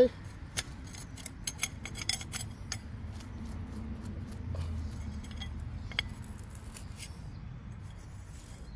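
Serrated digging knife cutting and scraping through turf and soil, a quick string of sharp gritty clicks and scratches over the first few seconds with a few more later, as a hand sorts through the loose dirt.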